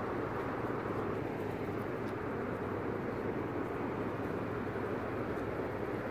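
Steady outdoor background noise: an even hum of traffic, with no distinct events.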